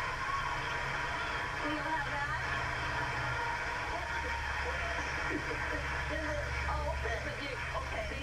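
Faint talk from a television or radio programme in the background, over a steady low hum.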